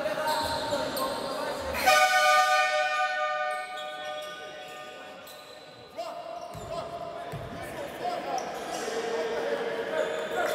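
An arena horn sounds once, about two seconds in: a loud pitched blast that rings in the hall and dies away over the next few seconds. Around it come basketball bounces and voices on the court.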